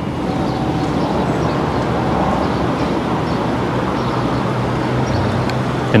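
Motor scooter running while being ridden: a steady rush of road and wind noise over a low engine hum that strengthens slightly in the second half.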